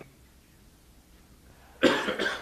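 A person's cough, sudden and loud, picked up close on a desk microphone near the end, in a few quick bursts. Before it there is only quiet room tone.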